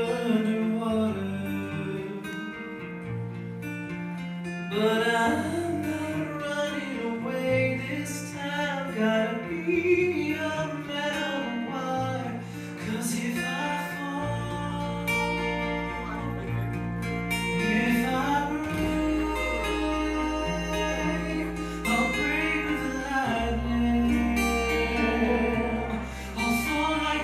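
Live band performing a song: a male voice singing over guitar, with a deep bass coming in about halfway through.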